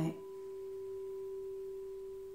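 Frosted quartz crystal singing bowl ringing with one steady, pure tone and a faint higher overtone.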